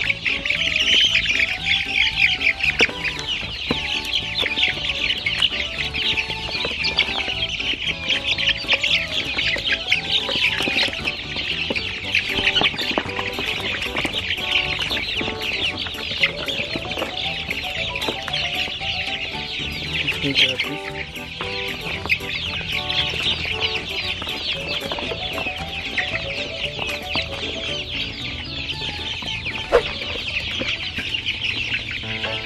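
A dense flock of young laying-hen pullets calling without a break as they crowd to feed, a constant mass of high cheeps and clucks. Background music runs underneath.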